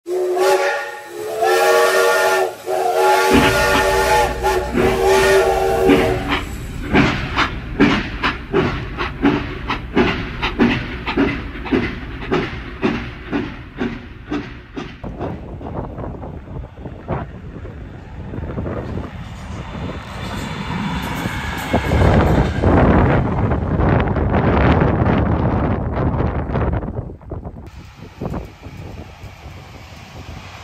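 Electric locomotive horn sounding in three held blasts over the first six seconds, then the wheels clacking over rail joints in a steady rhythm that slows and fades as the train passes. A broad rushing noise later swells and drops away suddenly near the end.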